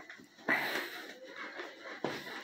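A single short, noisy breath, like a wheezy exhale, starting about half a second in and trailing off within the next half second.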